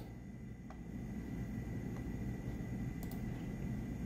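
Quiet room tone: a steady low hum with a faint high tone, broken by a few faint clicks.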